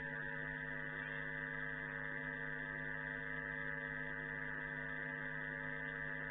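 Steady electrical hum made of several held tones, unchanging throughout, with no speech over it.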